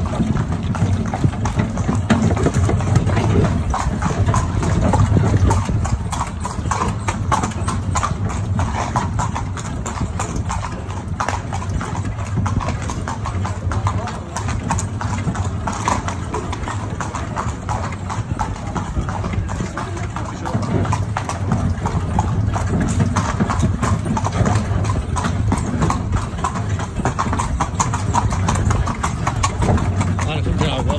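A horse's hooves clip-clopping steadily on stone paving as it pulls a metal carriage.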